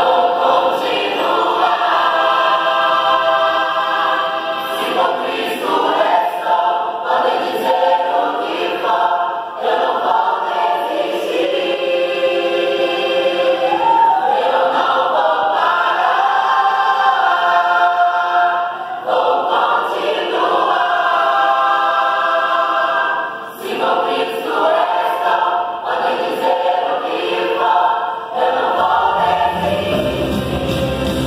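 Large mixed-voice gospel choir singing in harmony, phrase after phrase with short breaths between, with little bass underneath. Right at the end, low instruments come in under the voices.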